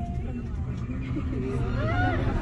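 Steady low rumble inside a cable car cabin as it runs downhill, with faint voices in the cabin.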